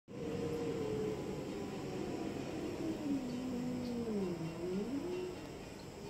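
Domestic cats in a standoff, yowling at each other with long, low, drawn-out moans that slide down in pitch, dip and rise again near the end, over a low rumbling growl.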